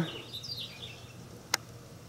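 Faint bird chirps, with a single sharp click about one and a half seconds in.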